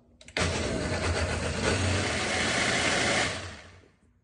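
Countertop blender motor starting suddenly and running for about three seconds, mixing a thick pão de queijo batter just after tapioca starch has been added, then winding down and stopping near the end.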